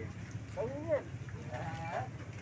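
A person laughing among the voices of a crowd at a busy open-air street market. The voices rise and fall in pitch twice, over a steady low background rumble.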